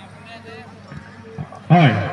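A man's voice calls a drawn-out "haan" that falls in pitch near the end. It sits over a low murmur of background voices from the crowd.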